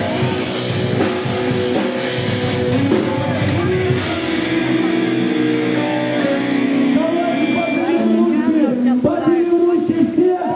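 A live metalcore band plays, with distorted electric guitars and a drum kit. About four seconds in the drums drop away and held guitar chords ring on. Near the end, voices come in over them.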